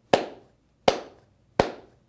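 Hand claps on a steady beat, three sharp claps about three-quarters of a second apart, each with a short ring-off. Each clap marks one beat, a run of quarter notes.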